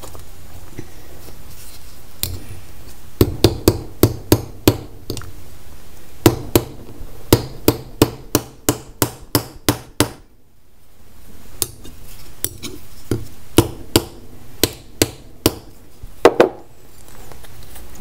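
Hammer tapping down a brass rivet made from a spent .22 shell, setting it through flatware jewelry on an anvil. Sharp taps, about three a second, start a few seconds in, break off briefly and resume for a second run.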